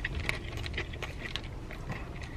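Chewing a bite of crispy breaded fried chicken tender: irregular soft crunching clicks, a few a second.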